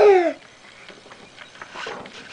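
A young child's short, high vocal squeal that slides quickly down in pitch, followed by soft breathing and small rustling sounds.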